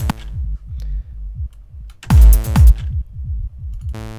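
Ableton Live's Analog synth, set to mono with its default untreated patch, sounds a low buzzy bass note twice, about two seconds apart, while the notes of a simple riff in A are laid in. Under it a looping techno drum pattern plays, with kicks that fall in pitch.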